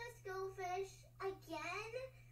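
A child's voice singing from a cartoon soundtrack played back, with held notes and a rising glide near the end. A steady low hum runs underneath.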